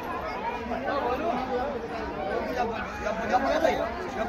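Several people talking over one another: low, overlapping chatter with no single clear voice.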